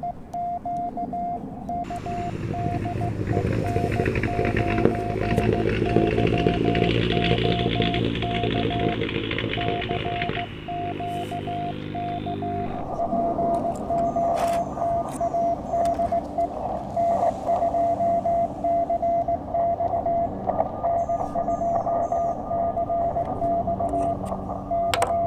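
Morse code (CW) tone of about 700 Hz from a QRP CW transceiver's speaker, keyed in dots and dashes: a received station calling "POTA DE N2CX". From about two seconds in to about thirteen seconds in, a louder background hiss and low hum sit under the tone.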